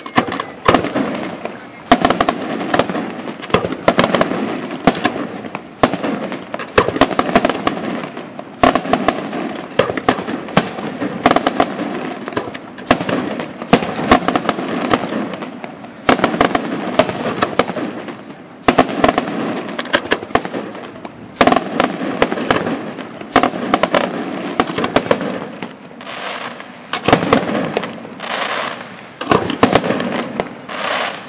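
Pirotecnica Moderna aerial firework shells bursting in a rapid barrage, several sharp bangs a second with echoes rolling between them, starting abruptly.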